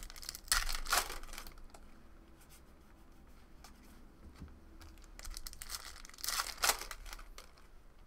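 Foil trading-card packs being torn open and their wrappers crinkled, with two louder rips, one about half a second in and one about six seconds in, and light rustling of cards being handled between them.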